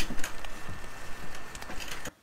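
Small blower fan of an inflatable penguin lawn decoration running steadily as the decoration inflates, with a thin steady whine over a rushing hiss and a few light rustles of the fabric.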